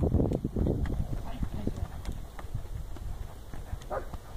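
Hoofbeats of a Mangalarga colt gaiting in the marcha picada on arena dirt: a quick, even run of soft beats that grows fainter as the horse moves off.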